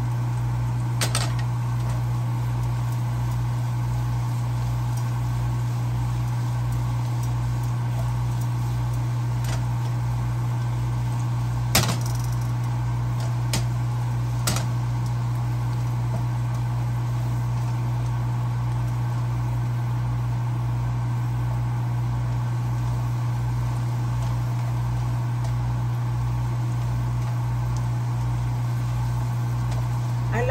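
A steady low hum throughout, under a faint sizzle from potatoes frying in a nonstick skillet. A few short clicks of a utensil against the pan, the sharpest about twelve seconds in.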